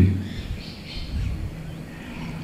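A pause in a man's speech at a microphone: the end of a word, then faint outdoor background sound.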